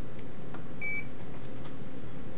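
A single short electronic beep from the ultrasound machine, one steady high tone lasting a fraction of a second, about a second in, over a steady low hum and a few faint clicks.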